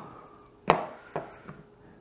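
Echo Dot's plastic housing knocking against the wooden faceplate as it is pressed into a CNC-cut hole: one sharp knock a little under a second in, then a few fainter taps. It won't go in, because the hole is cut one and a half millimetres too small.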